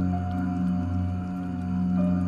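Om chanting meditation music: a deep, steady drone held without a break, with fainter higher tones sustained above it.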